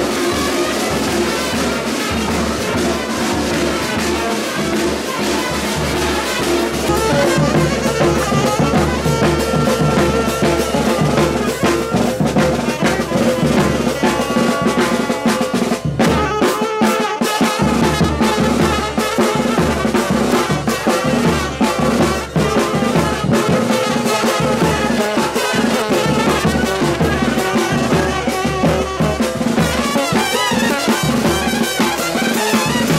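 Lively dance music led by horns over a steady drum beat.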